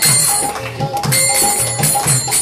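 Devotional music: small hand cymbals ringing in a quick, steady rhythm over low drum beats.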